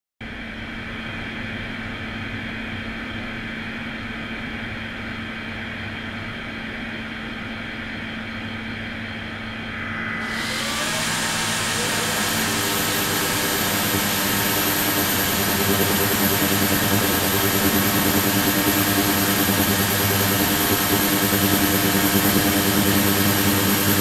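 Ultrasonic tank with its degassing and microbubble water-circulation system running, giving a steady hum. About ten seconds in, the ultrasonic transducers (28 kHz and 72 kHz) switch on, and a loud hiss with a high thin whine joins. The sound grows louder over the next few seconds as the tank's water is driven into cavitation.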